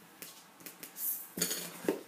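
Coloured pencils clicking and clinking against each other and the desk as they are handled and swapped, a few light, sharp knocks, the loudest about one and a half seconds and just under two seconds in.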